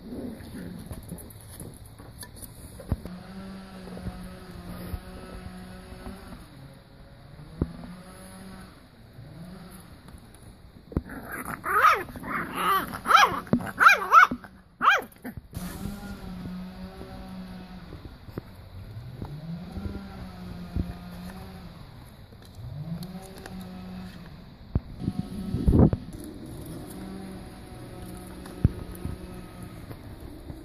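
Beagle puppies yapping and yelping as they play, with a loud burst of high yelps a little before the middle and a single sharp bark near the end.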